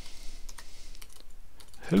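Typing on a computer keyboard: a handful of separate keystrokes at an uneven, unhurried pace as a word is entered.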